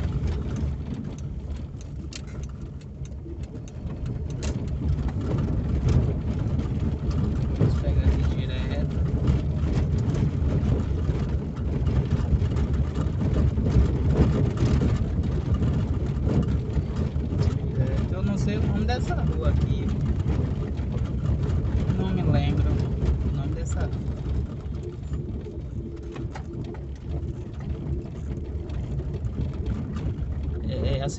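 A car driving slowly along rough town streets, heard from inside the cabin: a steady low engine and tyre rumble with scattered small knocks and rattles from the uneven road surface.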